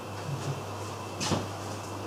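Steady low room hum with a single short knock or click about a second in.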